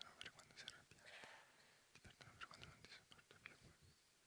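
Faint whispering: people saying words quietly under their breath, with soft hissing 's' sounds and small mouth clicks.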